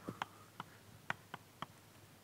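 Chalk tapping on a blackboard as writing begins: about six faint, sharp, irregular taps.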